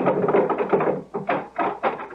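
Radio-drama sound effect of a prison gate being opened: a rough, noisy sound for about a second, then three sharp metallic clanks.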